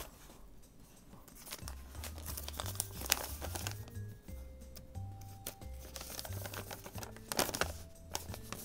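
Paper rustling and crinkling as a folded letter is drawn out of a box and unfolded, with a louder handful of rustles near the end. Soft background music with low bass notes comes in about a second and a half in.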